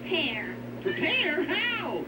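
Cartoon audio from a television: a voice making drawn-out, meow-like calls that swoop up and down in pitch, over a steady electrical hum.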